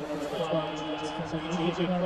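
Indistinct speech that the speech recogniser did not pick up as words.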